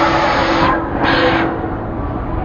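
Loud rushing noise of an amusement ride in motion, with a steady hum beneath. The rush cuts out briefly a little under a second in, comes back, then fades from about one and a half seconds.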